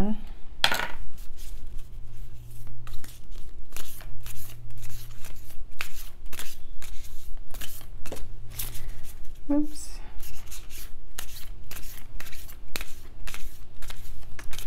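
A deck of large, matte-finish oracle cards being shuffled by hand. The cards slap and slide against each other in quick, irregular strokes, several a second.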